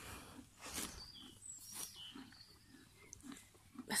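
Faint rubbing and rustling of a hand stroking a foal's coat and legs, with a few short, high chirps.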